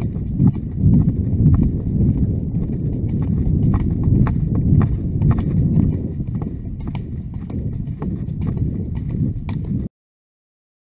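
Horse's hooves clip-clopping on a dirt-and-grass track, irregular sharp knocks over a steady low rumble of riding movement on the microphone. The sound cuts off suddenly near the end.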